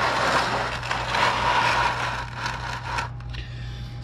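Oil drain pan being dragged across the garage floor to sit under the oil filter housing: a gritty scrape lasting about three seconds, dying away near the end.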